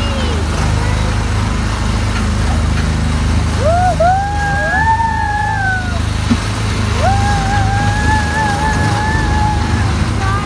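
Autopia ride car's small gasoline engine running with a steady low hum, heard from the seat. Over it, a woman's voice sings two long held notes, one about a third of the way in and one from about the middle to the end.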